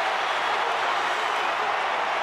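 Large stadium crowd cheering and applauding a home try, in a steady roar.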